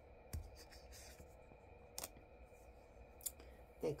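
Tarot cards being handled on the table: a sharp tap about a third of a second in, a few quick papery slides, and another tap about two seconds in, over a faint steady hum.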